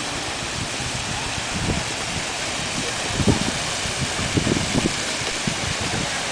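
Fountain jets spraying and splashing down into the basin: a steady rushing hiss of falling water, with a few dull low thumps in the second half.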